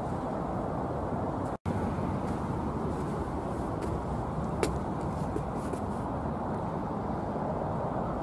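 Steady background road traffic noise, an even rumble with no distinct vehicle standing out. It cuts out for an instant about one and a half seconds in, and there is a faint click a few seconds later.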